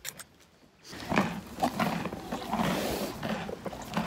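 A horse's muzzle right up against a phone's microphone: close-up breathing and snuffling, with the lips and whiskers rubbing and scraping on the phone. It starts suddenly about a second in after a single short click, and stays loud and busy.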